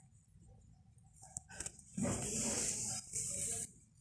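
African grey parrot growling while being held: two harsh, raspy growls about two seconds in, the second shorter.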